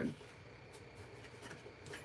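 Faint rustling and rubbing of folded cardstock being handled.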